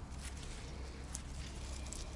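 Quiet handling sounds: faint scattered ticks and rustles of pepper-plant leaves being touched by hand, over a low steady rumble.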